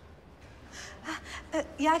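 A woman's short breathy gasps, then her voice as she begins to speak near the end.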